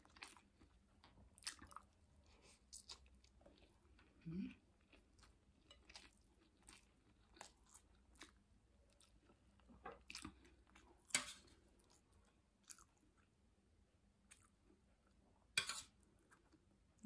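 Faint close-up chewing of a mouthful of steamed rice eaten by hand, with small wet mouth clicks scattered throughout. There is a short closed-mouth hum about four seconds in and a sharper click near the end.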